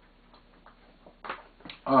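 A man sipping water from a glass: a few faint clicks and mouth sounds in the quiet, then louder sharp clicks and knocks in the second half as he swallows and sets the glass down.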